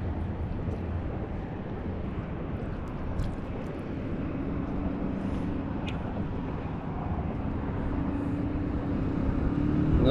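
Steady low outdoor rumble with a motor engine's low hum that comes in about halfway through and grows a little louder toward the end, and a couple of faint clicks.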